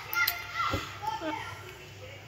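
A small child's high-pitched vocalising: several short squeaky sounds, rising and falling in pitch, in the first second and a half.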